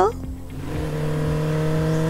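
Vehicle engine sound effect: a steady running hum that comes in about half a second in and grows gradually louder.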